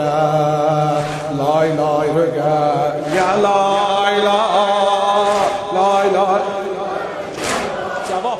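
A solo voice chanting a mournful Shia elegy (mersiye) in long, wavering phrases with short breaks, over a steady low drone.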